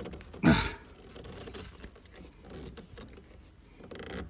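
Faint handling noise from a plastic valve adapter being held and turned at a water tank's outlet: scattered small clicks and rustles. A short vocal sound comes about half a second in.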